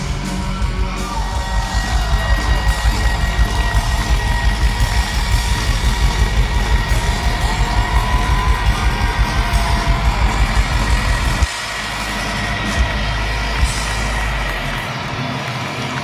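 Live rock band playing loud through a big outdoor PA, picked up by a phone in the crowd, with a steady driving drum beat. The band stops suddenly about three quarters of the way in; a low note rings on for a few seconds and fades, under crowd noise and cheering.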